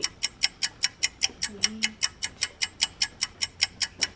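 Clock ticking, about four evenly spaced ticks a second, marking the time running out while a player thinks. A brief soft laugh or vocal sound comes in about a second and a half in.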